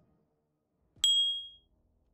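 A single bright notification-bell ding sound effect, of the kind that goes with a subscribe-button animation. It comes about a second in and rings out briefly, fading within about half a second.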